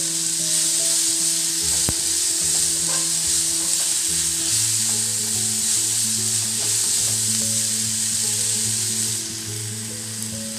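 Chopped onion and green capsicum sizzling steadily in hot oil in a nonstick pan while being stirred with a wooden spatula.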